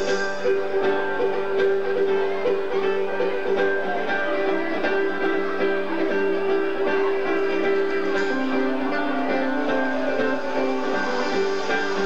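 Live band music with electric guitar and other plucked strings, long notes held over a steady accompaniment.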